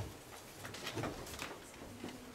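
Room bustle as people get up from tables: paper rustling and shuffling, with a faint low murmur of voices.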